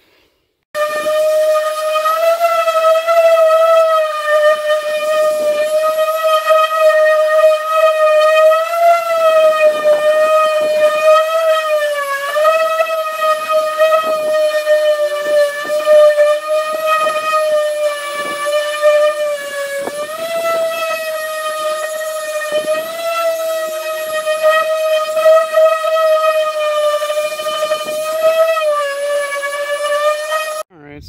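Corded Chicago Electric (Harbor Freight) random-orbital DA sander with 80-grit paper running on a steel car door, stripping paint down to bare metal. It is a loud, steady whine that starts about a second in, its pitch dipping briefly a few times.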